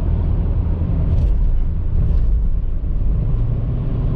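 Steady low road and drivetrain rumble inside the cab of a Toyota 4Runner at highway speed with a trailer in tow. Two faint knocks come through about one and two seconds in as the truck goes over bumps on an overpass.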